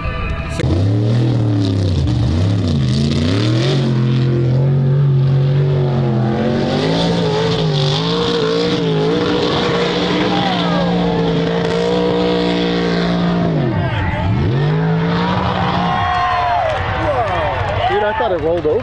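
Mud truck engine revving hard as the truck drives through a deep mud pit. The revs dip and climb back about two seconds in, stay high through the middle, then drop sharply and climb again about three-quarters of the way through.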